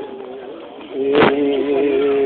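Voices holding long, drawn-out chanted notes of a ceremonial song. They swell after a single sharp knock about a second in.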